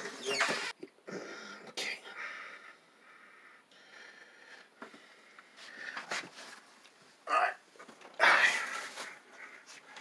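A man's breathing and short huffs as he bends down, with a louder exhale about eight seconds in.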